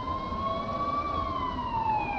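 Ambulance siren wailing in one slow sweep: the pitch rises to a peak about a second in, then falls steadily, over a low rumble.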